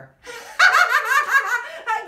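Hearty, high-pitched laughter: a quick run of ha-ha-ha starting about half a second in and lasting about a second and a half.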